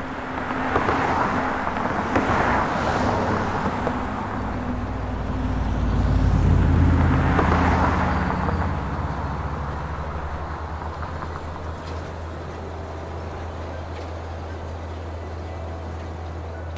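Road traffic: two vehicles pass, about two and seven seconds in, each a rise and fall of tyre and engine noise, over a steady low hum.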